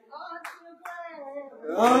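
A few sharp hand claps in a pause of a gospel song, with faint voices between them, and a singing voice coming back in near the end.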